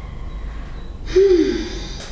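A person's short breathy sound about a second in, falling in pitch, like a sigh or gasp.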